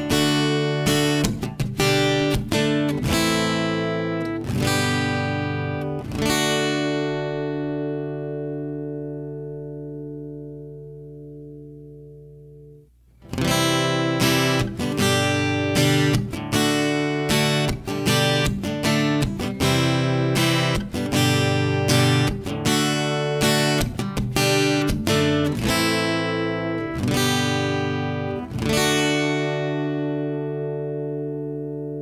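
Acoustic-electric guitar strumming chords, recorded direct by line through its built-in preamp, with EQ, compression and reverb added. The last chord rings out and fades for several seconds. About 13 seconds in, the same chord passage starts again, now recorded through a Focusrite Scarlett 2i2 3rd Gen interface after the first take through a Behringer UMC22.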